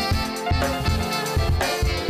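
Alto saxophone playing a melody with scooping slides up into its notes, over a live band with electric guitar, bass, keyboard and a steady drum beat.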